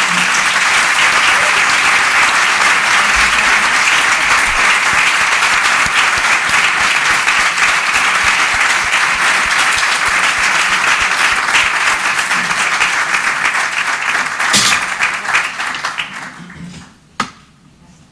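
Audience applauding steadily, the clapping dying away a couple of seconds before the end, followed by a single sharp knock.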